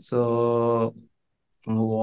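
A man's voice holding a long, drawn-out "so" on one steady pitch for about a second, then a short silence before he starts speaking again near the end.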